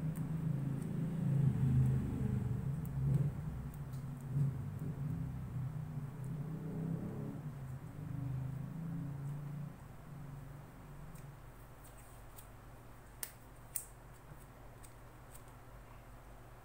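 Handling noise from hands working the wires of a dynamic microphone's cartridge while taping its solder joints. A low rumbling rustle eases off after about ten seconds, with light clicks throughout and two sharper clicks near the end.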